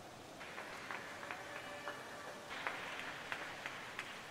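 Faint hall ambience at an indoor diving pool, with faint background music, a few scattered claps and clicks, and brief faint tones.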